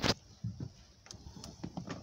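Phone handling noise inside a car: one short knock at the start, then a few faint, irregular clicks and rustles.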